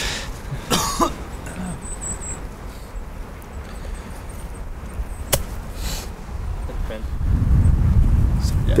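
Golf iron striking the ball once from a muddy lie, a single sharp click about five seconds in. Wind rumbles on the microphone throughout and grows stronger near the end.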